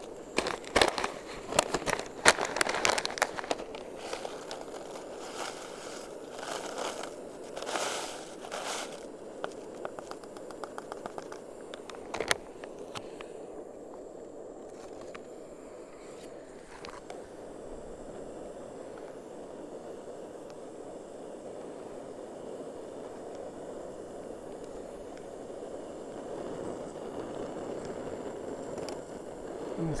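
A plastic food pouch of dry pasta mix being torn open and crinkled, with dense crackling for the first several seconds and a sharp click about twelve seconds in. After that comes a steady rushing of the canister gas stove burning under the boiling canteen cup, with wind.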